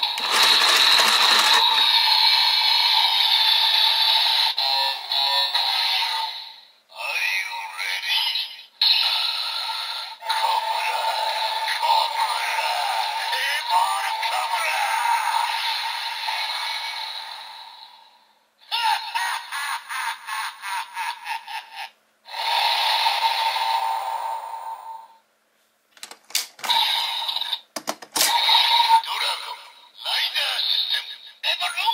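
DX Evol Driver toy belt playing its electronic transformation voice calls and music through its small built-in speaker, tinny with no bass, in several bursts separated by short pauses. About two-thirds through comes a fast pulsing sound, and near the end sharp plastic clicks as an Evolbottle is pushed into the driver.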